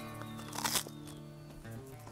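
A short crisp crunch a little under a second in as a bite is taken of crispy roast turkey neck skin, over steady background music.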